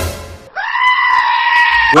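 A goat bleat used as a comic sound effect: one long, steady, high call lasting about a second and a half, starting about half a second in.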